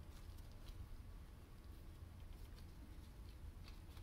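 Near silence: room tone with a steady low hum and a few faint, scattered clicks.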